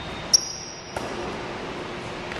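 Basketball bouncing on a hardwood gym floor: two sharp knocks about half a second apart, with a thin high tone between them.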